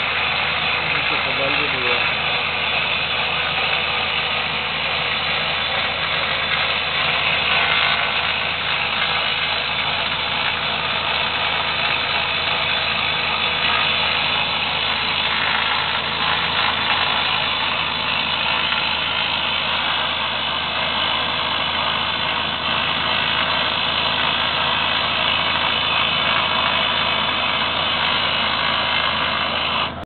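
Excavator-mounted rock drill boring into bedrock, a loud, steady, unbroken din mixed with the running diesel engines of the excavators.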